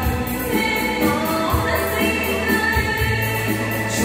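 A song with a recorded backing track and a steady bass beat, with live singing into handheld microphones.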